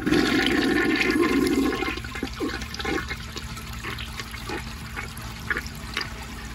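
1955 Eljer Duplex toilet flushing from an overfilled tank: a loud rush of water swirling into the bowl for the first two seconds or so, then quieter swirling water with short gurgles as the bowl drains.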